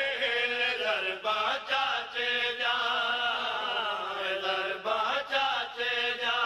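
A man's voice chanting Saraiki devotional verse (qaseeda) in long, drawn-out melodic phrases, with brief breaths between lines.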